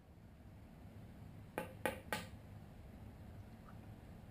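A hammer striking a two-inch piece of PVC pipe three times in quick succession, a little past a second and a half in, driving a new fork oil seal into the lower leg of a Showa motorcycle fork.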